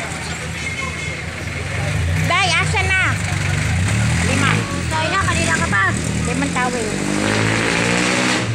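A motor vehicle engine running close by, its low hum rising in pitch near the end, with people's voices over it.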